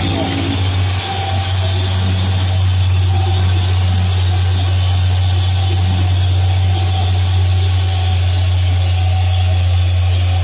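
Hino 500 truck's diesel engine pulling a laden truck uphill: a steady, loud low drone that holds an even pitch, over a haze of road noise.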